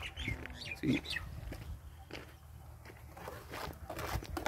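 Quiet outdoor ambience with faint, scattered light clicks and knocks and a brief bird chirp.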